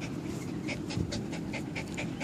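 A small long-haired dog panting quickly and evenly, about three to four breaths a second, close to the microphone.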